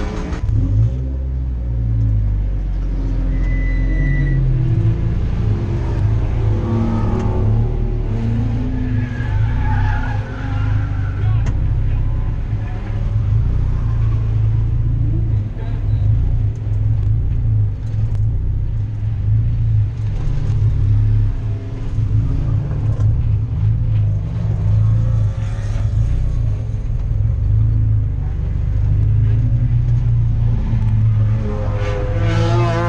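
Race car engine running continuously, heard from inside the cabin, its pitch rising and falling as the revs change.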